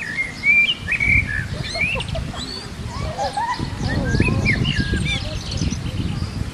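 Several birds chirping and whistling in quick, overlapping rising and falling calls, over a gusting low wind rumble that swells twice.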